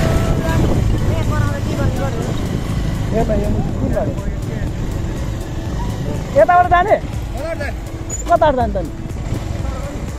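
Motorcycle riding at road speed: a steady low rumble of engine and wind on the microphone. Voices talk over it, loudest in short bursts in the second half.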